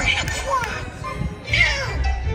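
Stage-show soundtrack music under a squeaky, cartoon-like character voice whose pitch slides up and down, ending in a falling glide.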